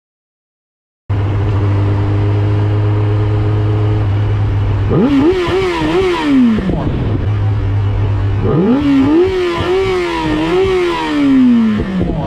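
After about a second of silence, a motorcycle engine runs at a low steady idle, then is revved up hard twice, each time holding high with small wobbles before the revs fall away.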